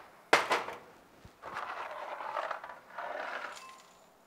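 A ceramic bowl set down on a stovetop with one sharp clink, then dry cereal poured from a box into the bowl in two pours, the first a little over a second long, the second shorter.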